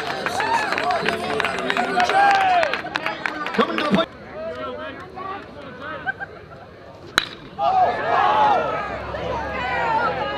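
Baseball game chatter: players and fans shouting and calling out. About seven seconds in comes the single sharp crack of a bat hitting the ball, followed by louder yelling.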